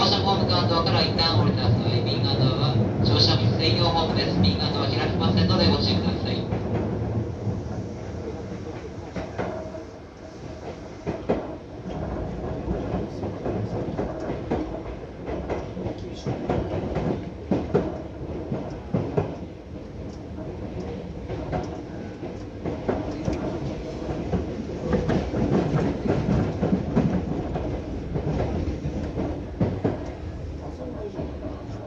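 Running noise of Seibu Ikebukuro Line train set 2085F. It is loud for the first six seconds, then drops, and the wheels click and clatter over rail joints and points.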